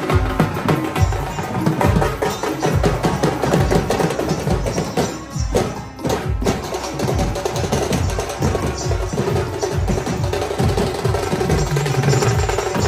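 Dhol drums beaten in a fast, steady rhythm, with a brief drop about six seconds in.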